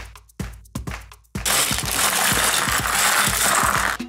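Background electronic music with a steady beat. From about a second and a half in, a loud crinkling rustle and clatter cuts in over it: a clear plastic Lego parts bag being torn open with the small bricks rattling inside. The rustle stops abruptly.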